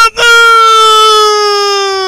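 A voice holding one long, loud high note for about two seconds, its pitch sinking slightly before it breaks off.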